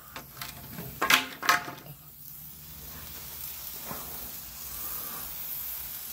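Handheld gun-style fountain firework burning: from about two seconds in, a steady spraying hiss of sparks that slowly grows louder. Two short sharp sounds come just before the hiss sets in.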